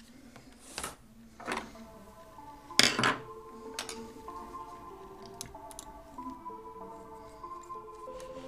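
Clicks and knocks from hands handling the parts of an opened laptop, the loudest a sharp double knock about three seconds in. Soft music with held notes that slowly change comes in partway through and carries on under the handling.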